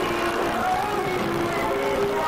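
Arena crowd at a wrestling match, many voices shouting and cheering at once in a steady roar.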